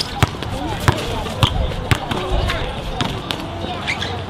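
A basketball being dribbled on a hard outdoor court: a string of sharp, irregularly spaced bounces, with players' voices in the background.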